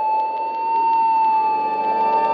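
Organ music bridge: one high note held steady, with lower notes joining in near the end to build a chord.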